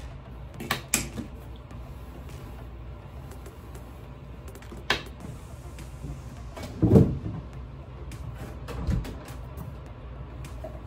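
A few sharp clicks and knocks, then a heavier low thump about seven seconds in and a smaller one near nine seconds: a wooden bathroom door being moved and bumped while the phone is handled and repositioned.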